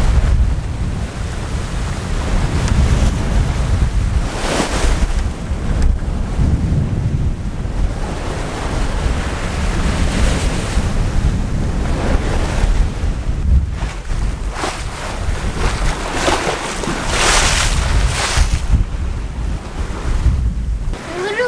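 Wind buffeting the microphone over the rush of waves breaking and water streaming along a sailboat's hull as it sails fast on the open ocean. Louder splashes of breaking water come about four and a half seconds in, around ten seconds, and again near seventeen to eighteen seconds.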